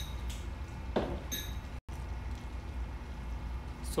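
A wok of coconut-milk stew simmering over a lit stove burner under a steady low hum, with a couple of light clicks about a second in.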